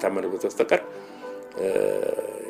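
Spoken narration in Amharic over background music, with a brief lull in the voice in the middle.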